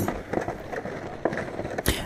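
Footsteps crunching irregularly through snow, with one louder knock near the end.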